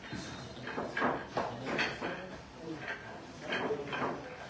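Billiard balls clacking together as they are gathered into a triangle rack on the pool table: several sharp clicks, spread irregularly, over voices in the hall.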